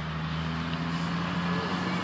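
A steady low engine-like hum, such as a motor vehicle running somewhere off-picture, over faint outdoor background noise.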